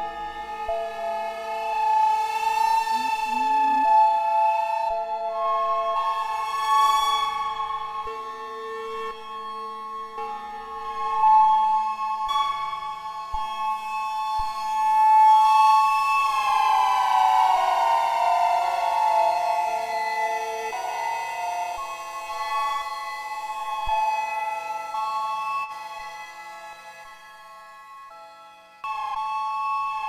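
Soma Lyra-8 synthesizer drone through a Soma Cosmos: layered sustained tones, with a slow downward pitch glide about halfway through. A new, louder tone cuts in just before the end.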